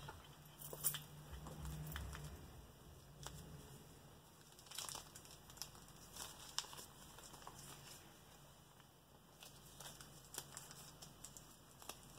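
Faint, scattered paper crinkling as a crumpled paper receipt is unwrapped and unfolded by hand.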